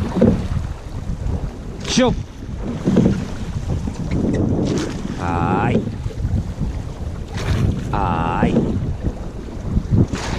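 Crew rowing a llaut at a steady stroke, with the oars catching and pulling about every 2.7 seconds over constant water noise and wind on the microphone. A drawn-out tone that bends up and down comes mid-stroke twice.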